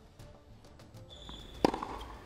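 A tennis ball struck once by a racket on a hard court, a single sharp hit shortly before the end, preceded by a short high-pitched squeak.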